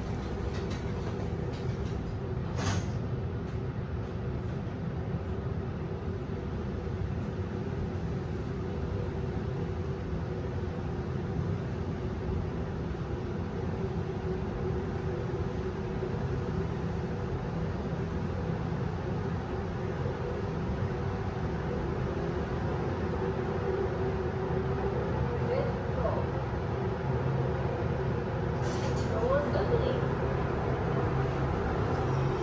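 Kone S MiniSpace traction lift car riding up through the shaft: a steady low hum and rumble in the cab with a faint steady tone. The car doors thud shut about three seconds in and slide open again near the end.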